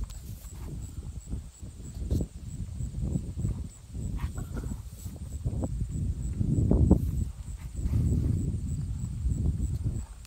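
A Wagyu calf suckling at its mother's udder: irregular low sucking, gulping and bumping sounds, loudest about two-thirds of the way in.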